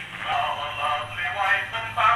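Acoustic cylinder phonograph playing a recording of a singing voice through its horn; the sound is thin and tinny, with no bass and no top.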